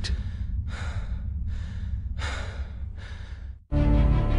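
Background music with a steady low bass under five loud, hard breaths in a regular rhythm, a little under a second apart. Near the end the sound cuts out for a moment and the music comes back louder.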